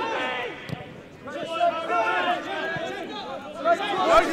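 Men's voices shouting and calling across a football pitch during play, several overlapping at once.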